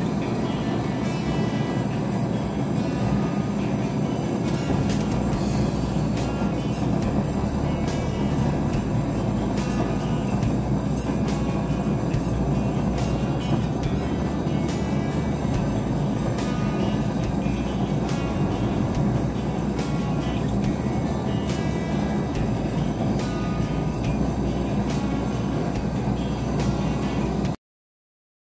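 A gas torch flame burning steadily against a crucible of melting gold, with music over it. The sound cuts off suddenly near the end.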